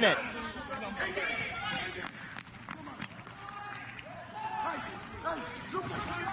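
Field-level soccer match sound: scattered voices of players calling out on the pitch over a light background of a small crowd.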